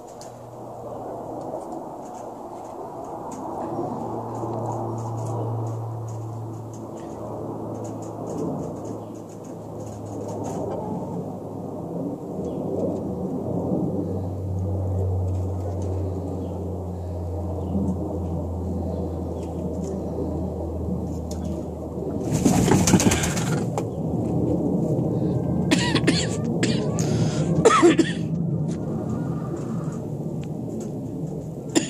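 Nesting hens making low-pitched, continuous grumbling calls, from an annoyed hen crowded on her nest. A short loud noise breaks in about two-thirds of the way through, and a few sharp clicks follow near the end.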